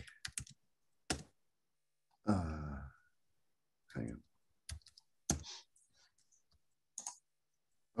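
A few isolated keystrokes on a computer keyboard: sharp single clicks spread out over several seconds as symbols are typed, with pauses between them.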